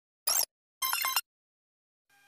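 Two short, sharp sound-effect bursts about half a second apart, the second slightly longer and carrying a pitched tone, from a logo's audio.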